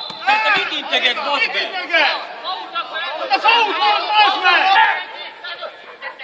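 Several voices shouting and calling over one another during an amateur football match, the voices of players and onlookers on the pitch side. The calling dies down near the end.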